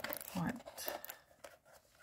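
Thin card packaging being peeled and torn off a hard plastic toy, heard as a few short crackles and clicks.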